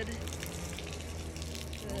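Water running and splashing out of a soaked terry-cloth robe as it is wrung out by hand.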